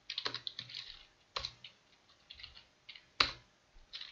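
Typing on a computer keyboard: a quick run of keystrokes at the start, then scattered single taps with a few heavier strokes, the loudest about three seconds in.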